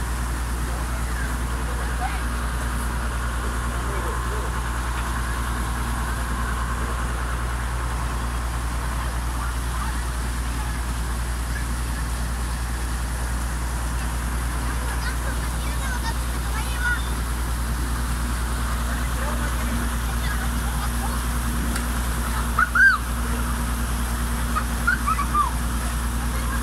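Water rushing steadily through a channel cut in a mud bank to drain it. A few short high chirps sound near the end.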